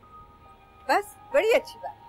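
Background score of steady held tones under a drama scene, with a short spoken phrase about a second in.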